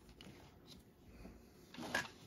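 Faint handling noises on a workbench: a few light clicks and rustles, with a louder knock near the end.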